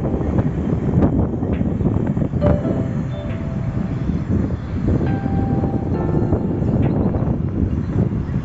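Steady rumble of town street traffic, motorbikes and cars heard from high above, with a rough buffeting that sounds like wind on the microphone. A few brief faint tones come through.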